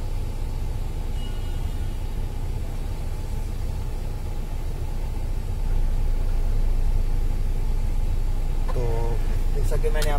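A newly fitted heater blend-door actuator motor in a Maruti Suzuki Swift Dzire turning its lever as the temperature setting is changed, with a faint thin whine about a second in. A steady low hum runs underneath and gets louder a little past halfway. The turning shows the replacement actuator now works, replacing the old one that had left the heater giving no heat with the AUTO light blinking.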